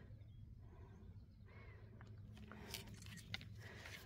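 Near silence: faint outdoor ambience with a low rumble and a couple of soft clicks about three seconds in.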